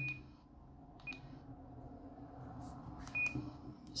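Short, high key beeps from an ICOM ID-52 handheld transceiver as its buttons are pressed to step back through the menus. There are three single beeps: one at the start, one about a second in and one about three seconds in, with a few faint clicks between them.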